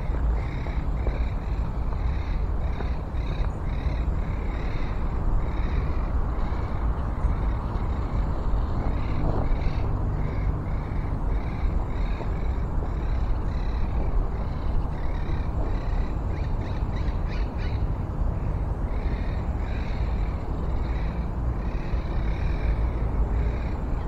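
A small animal calling over and over in an even rhythm, about two short chirps a second, over a steady low rumble.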